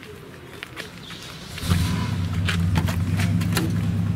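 A few light clicks, then a vehicle engine comes in suddenly just under halfway through and runs at a steady idle with a low hum.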